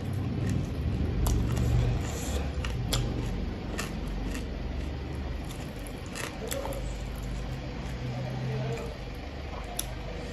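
Fingers mixing rice and curry on a plate, making scattered light clicks and wet squishes, over a steady low rumble of background noise.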